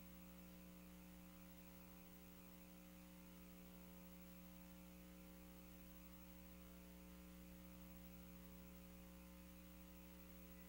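Near silence: a faint, steady electrical mains hum with no other sound.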